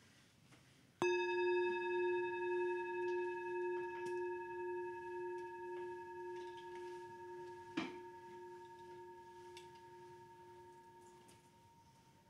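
Tibetan singing bowl struck once about a second in, ringing with several steady overtones that slowly fade; it opens a minute of meditation. A short knock sounds nearly eight seconds in while the bowl still rings.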